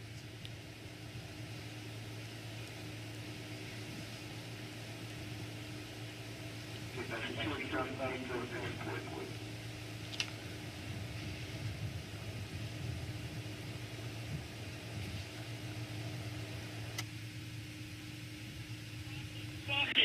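A steady low hum with a faint steady tone above it. About seven seconds in, a faint voice speaks for about two seconds. A single click comes about ten seconds in.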